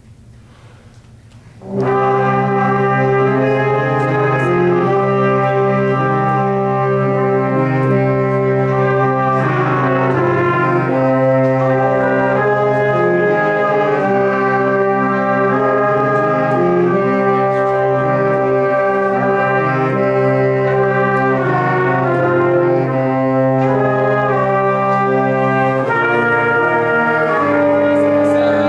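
A small wind ensemble comes in about two seconds in and plays a four-part exercise from the top: sustained chords that move at a slow, even pace.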